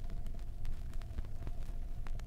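Surface noise of a 33⅓ RPM vinyl record in a pause between spoken rhymes: scattered clicks and crackle over a low rumble and a faint steady hum.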